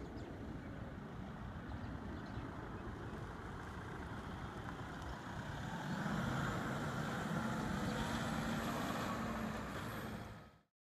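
Road traffic: a motor vehicle's engine and tyres, a steady rush that grows louder with a low engine hum about halfway through as the vehicle draws nearer.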